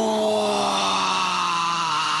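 A meme sound effect: a sustained, buzzy drone held on one steady pitch, with a hissing layer over it.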